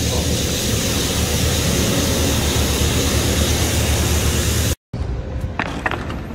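Street sweeper truck passing close, its rotating brushes scrubbing the wet road and picking up litter: a loud, steady rushing noise over a low engine rumble. It cuts off suddenly a little under five seconds in.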